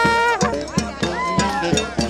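Live New Orleans-style jazz band playing at close range. A trumpet holds a note that falls away just under half a second in, then plays another falling phrase, over a steady beat of percussion hits.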